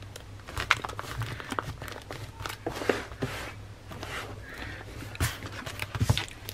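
Rustling, scraping and a few light knocks as stationery items and plastic pouches are pushed and slid into the pockets of a tightly packed canvas pouch.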